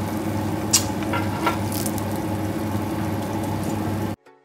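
Freshly air-fried chicken drumsticks sizzling in the pulled-out air-fryer basket over a steady low hum, with a few sharp clicks of metal tongs against the wire rack, the loudest one about a second in.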